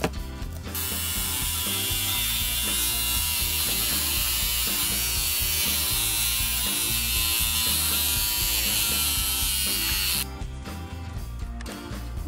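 Electric hair clipper running steadily as it shaves a doll's hair short. It starts about a second in and cuts off shortly before the end, over background music.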